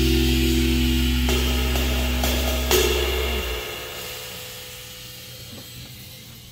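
A band's final chord ringing out: low electric-bass notes, a held electric-guitar chord and a cymbal wash sustain and die away over about four seconds, with one light drum or cymbal hit about three seconds in.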